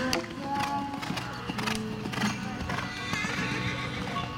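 A show-jumping horse's hooves thudding on sand as it lands over a jump and canters on, with a sharp hit at the landing and then regular hoofbeats. A song plays over it.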